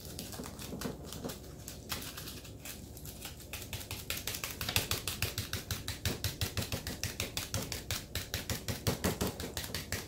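A ball of crumpled aluminium foil dabbed repeatedly onto soft fondant to give it a grass-like texture: quick crinkly taps, several a second, getting faster and louder about four seconds in.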